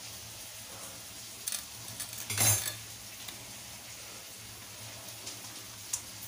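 Steel plate clinking and scraping as raw fish pieces are handled in it, with a few light clicks and one louder clatter about halfway through, over a steady faint hiss.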